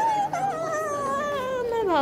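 A child's high-pitched voice wailing in a long, drawn-out, howl-like call that slides slowly down in pitch.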